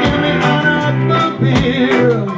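Live ska band playing, with electric guitar strumming over bass and drums in a steady, regular beat.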